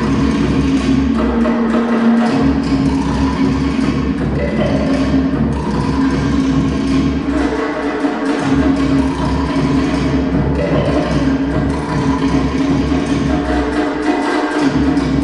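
Tahitian drum music with fast wooden slit-drum (to'ere) beats over a low drum. The low drum drops out for a moment about every six seconds.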